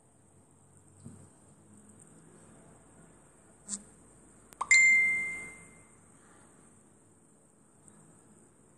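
Wooden puzzle pieces tapping on a glass tabletop: a light tap, then about a second later a sharp knock that leaves a clear ringing ding fading over about a second.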